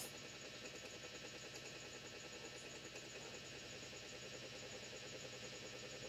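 Faint steady room tone: low background hiss with a faint hum and no distinct events.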